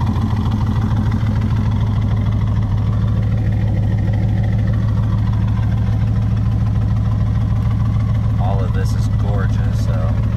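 LS7 V8 (the 505 hp C6 Z06 engine) swapped into a 1967 Chevrolet Corvette, idling steadily as a low, even hum, heard from inside the cabin.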